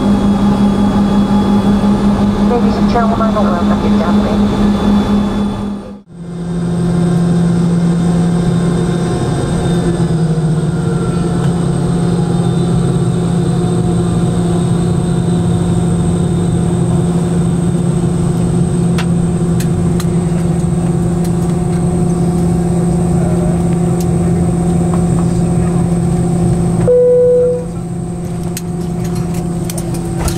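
Steady hum and whine of the Boeing 717's rear-mounted Rolls-Royce BR715 turbofans, heard inside the cabin while taxiing, with a sudden brief dropout about six seconds in. Near the end a short chime sounds and the engine noise falls.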